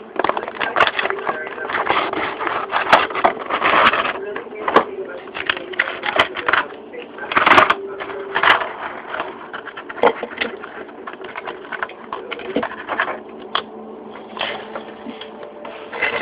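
Clear plastic blister packaging crinkling and crackling as it is handled and pulled apart, with irregular sharp snaps and clicks, to free two small diecast toy cars.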